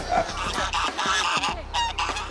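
Waterfowl honking and calling, with many short calls overlapping one another.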